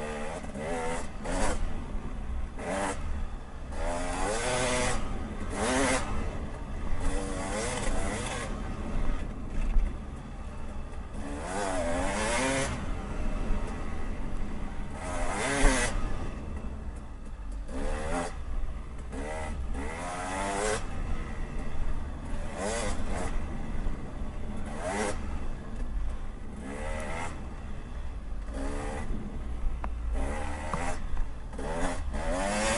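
Dirt bike engine revving up and falling back over and over as the rider opens and closes the throttle, each burst a rising whine, on an off-road trail ride.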